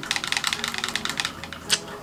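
A quick, dense run of light clicks, many per second, with one sharper click near the end.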